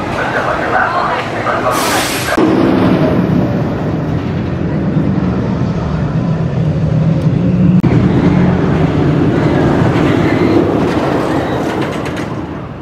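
Air Force One, a Rocky Mountain Construction roller coaster, its train rolling out of the station with riders' voices, then, from about two seconds in, a steady low clattering rumble as it climbs the lift hill.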